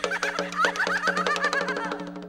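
Traditional Vietnamese tuồng theatre music: a fast, even roll of sharp percussive clicks over a sustained low drone and a wavering melodic line, tapering off at the end.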